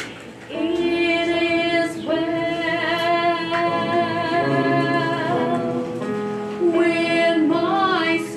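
A woman singing solo, a slow melody with long held notes, after a brief pause for breath at the start.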